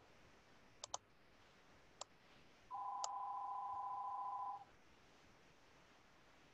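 Four short sharp clicks, two of them close together, and a steady electronic tone of two pitches sounding together, held for about two seconds from a little under three seconds in.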